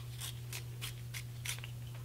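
Cosmetic pencil being sharpened in a small handheld sharpener: short scratchy scrapes, about three a second, over a steady low hum.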